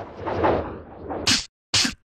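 Cartoon sound effects: a long noisy whoosh as a character flies through the air, then two short, sharp whip-like swishes in quick succession.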